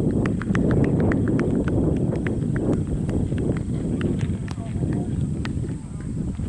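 Wind buffeting the microphone with a steady low rumble, over a quick irregular run of sharp clicks, several a second, that thins out near the end.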